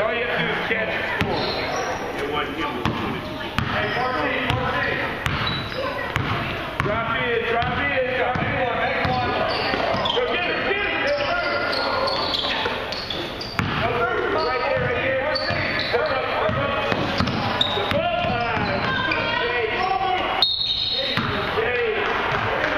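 A basketball bouncing on a hardwood gym floor, with many short thuds, under overlapping voices of players and spectators that run throughout in a large gym.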